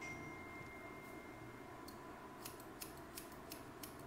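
Hairdressing scissors snipping wet hair: a run of quick, crisp snips, about eight of them, starting about halfway through.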